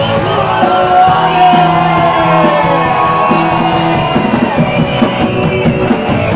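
A live rock band playing loud: drum kit, electric guitar and bass, with a shouted vocal over them.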